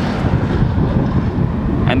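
Wind buffeting the microphone with a steady low rumble, mixed with the noise of trucks driving by.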